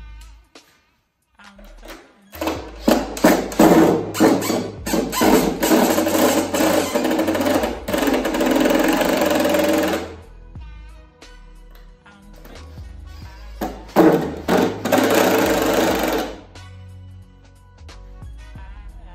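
Cordless drill-driver driving screws into wood, in two runs: a long one starting a couple of seconds in and a shorter one later, the motor buzzing with rattling bites as each screw goes in.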